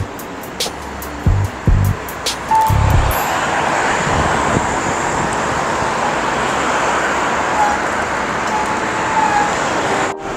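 Background music with a thumping beat for the first three seconds. After that, a steady rush of road traffic from cars passing on the street.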